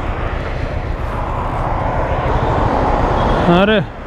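Highway traffic going past close by: a rush of tyre and engine noise that slowly swells toward the end, over a low rumble.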